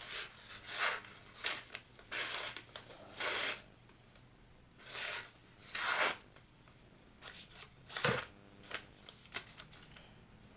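Phone book paper being sliced by the 14C28N steel drop-point blade of a Kershaw Lucha balisong: about ten short slicing strokes with pauses between them, the longest pause near the middle. It is a paper-slicing test of how sharp the edge is.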